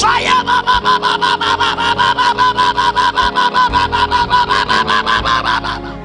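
A man's voice through a microphone rapidly repeating one short syllable, about six times a second at an even pitch, stopping shortly before the end, over soft keyboard music.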